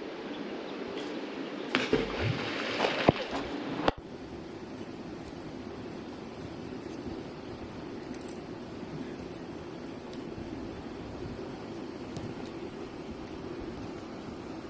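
Steady rush of flowing creek water. In the first four seconds a few sharp knocks and rustles sound close by, then the sound changes abruptly and settles into an even, unbroken rush.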